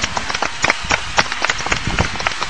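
A few people clapping their hands: quick, uneven, overlapping claps.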